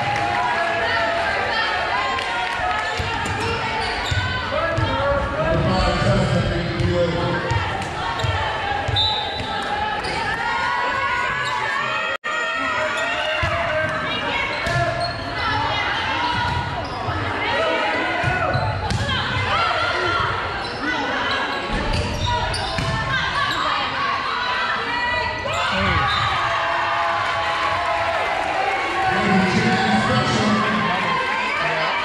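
Volleyball bouncing and being hit on a hardwood gym floor, with players' and spectators' voices echoing steadily around the gym. The sound drops out for an instant about twelve seconds in.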